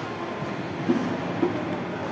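Steady background hubbub of a large indoor shopping arcade, with two short louder sounds about a second in and half a second later.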